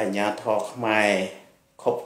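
Only speech: a man talking, with a brief pause about a second and a half in.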